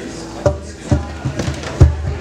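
Bass drum struck four times, about two beats a second, each a low, sharp thump.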